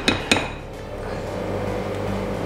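A spatula knocks twice against a glass mixing bowl right at the start, each knock a sharp clink with a brief ring. After that a faint steady background sound carries on.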